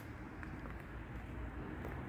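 Faint low outdoor background rumble of a street between apartment blocks, with soft footsteps of someone walking.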